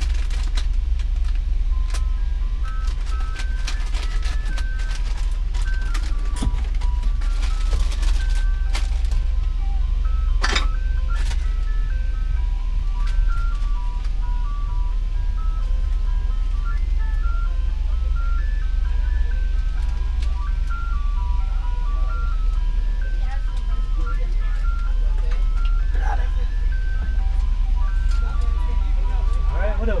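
Ice cream truck jingle playing a simple chiming tune one note at a time, looping, over a steady low hum. Scattered clicks and knocks sound now and then.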